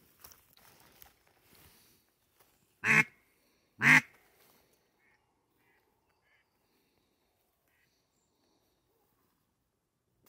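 Two short, loud mallard quacks about a second apart, a few seconds in, followed by a few faint chirps.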